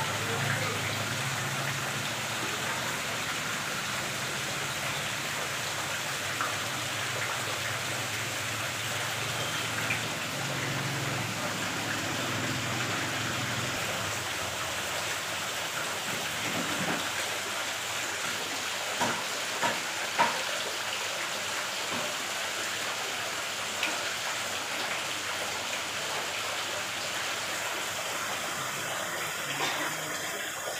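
A stream of water falling from a pipe into a fish tank, a steady splashing rush. A few short sharp knocks stand out about two-thirds of the way through.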